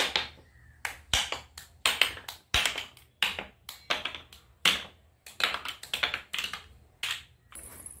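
Toy alphabet cube blocks clacking against one another as a stacked tower is taken down and the blocks are dropped onto a pile: an irregular run of sharp clacks, about three a second.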